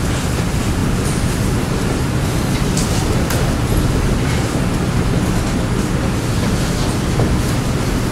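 Steady room noise: an even low hum and hiss with no speech, broken by a few faint soft ticks or rustles.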